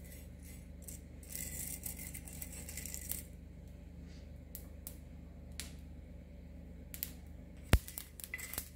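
Cumin and coriander seeds being stirred and scraped with a spatula across a dry iron tawa: a rustling scrape between about one and three seconds in, then scattered light clicks as the roasting seeds start to crackle, with one sharp click just before the end.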